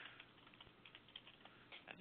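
Faint typing on a computer keyboard: a quick run of soft key clicks as a short name is typed.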